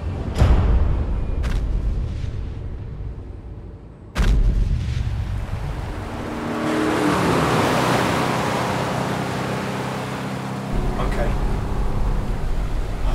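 Trailer sound effects: a deep boom at the start, a sharp boom about four seconds in, then a rushing roar that swells up over a few seconds and settles into a low rumble.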